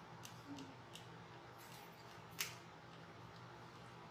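Scissors snipping ribbon: a few light clicks of the blades, then one sharper snip about two and a half seconds in. A fan hums steadily underneath.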